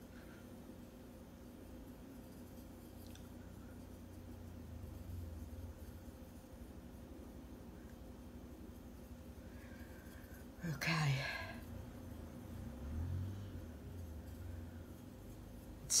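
Quiet room tone with a steady low hum; about eleven seconds in, a short breathy vocal sound from the woman, falling in pitch, like a sigh.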